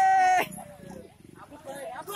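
A loud, steady high note held from before cuts off abruptly about half a second in. Faint voices of people talking in a crowd follow.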